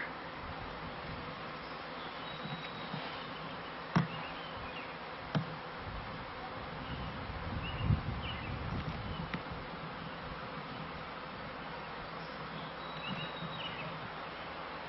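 Honeybee swarm buzzing steadily, with bees flying close around. A couple of sharp clicks about four and five seconds in, and a low thump near the middle.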